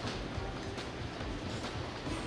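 Steady, low restaurant room noise with no distinct events.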